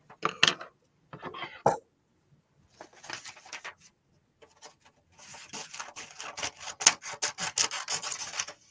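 Paper being handled, then scissors cutting through a sheet of black paper, closing in a quick run of short snips over the last three seconds.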